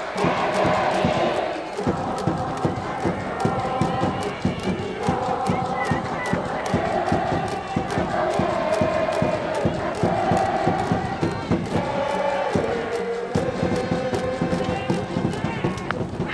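Cheering section in the stands: a band's long held notes over a steady, quick drumbeat, with crowd chanting.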